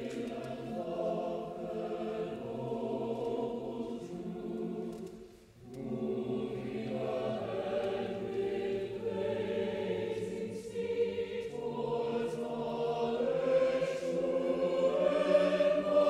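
A choir singing slow, sustained phrases, breaking off briefly about five and a half seconds in before the next phrase, then growing louder toward the end.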